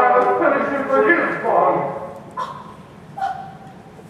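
Actors speaking dialogue on a theatre stage, carried through a large hall. The voices run for about two seconds, then fall away to two brief, quieter utterances.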